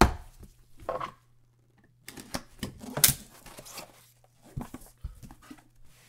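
Trading-card boxes being handled and set down on a table mat: a string of knocks and taps with light rustling between them. The loudest knock comes about three seconds in, after a short quiet spell.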